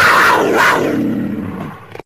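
A loud roar sound effect, played as a transition sting, lasting about two seconds with a downward slide and cutting off sharply at the end.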